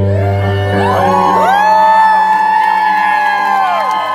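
The band's last chord rings out on electric guitar, its bass dying away in the first half second, as the audience whoops and cheers. Long held whoops rise about a second in and drop away near the end, with a few claps.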